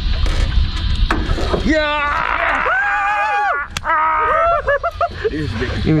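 Excited, drawn-out shouts and whoops from men celebrating a fish landed in the net, over a steady low rumble. A single sharp knock comes a little before the shouting ends.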